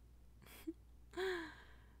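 A woman's short, breathy laugh, close to the microphone: a quick breath in, then one voiced exhale that falls in pitch.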